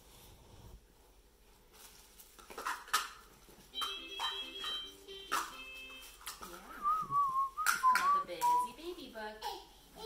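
Plastic toys knocking and clattering as babies play with them, with a brief run of short electronic toy tones and, near the end, a baby's high wavering vocalizing.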